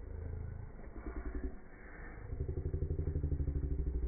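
An engine running with a rapid low putter, heard briefly at first and then louder through the second half.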